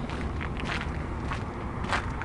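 Footsteps crunching on road salt scattered over a concrete walkway, about two steps a second, over a steady low rumble.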